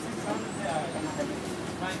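Steady engine and road noise inside a moving city bus, with a voice talking over it.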